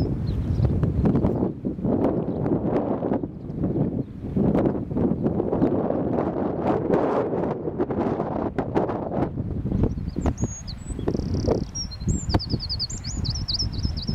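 Wind buffeting the microphone, a gusty low rumble that rises and falls. About ten seconds in, a small bird calls in quick runs of rapid high chirps that carry on to the end.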